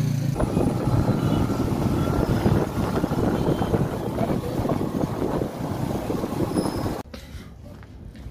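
Motorcycle running with road noise, heard from the back of a motorcycle taxi riding through traffic. The noise cuts off suddenly near the end, leaving much quieter sound.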